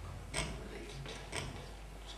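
A pause on a small stage: two faint clicks about a second apart over a steady low hum.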